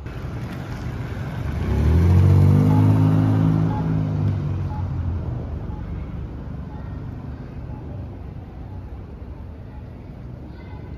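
A car driving past, its engine swelling to a peak about two seconds in, its pitch dropping as it goes by, then fading into a low street rumble.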